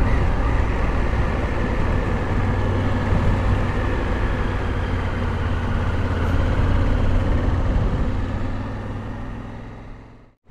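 Honda Africa Twin's parallel-twin engine running steadily under way, with a low drone mixed with wind rush over a helmet-mounted microphone. The sound fades away near the end.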